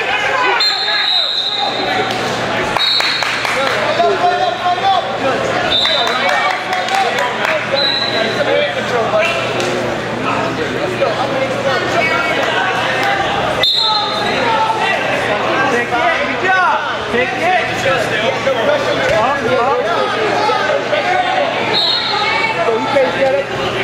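Many voices talking and calling out at once, echoing in a crowded gymnasium during a wrestling match. Short, high, single-pitch whistle blasts cut through several times.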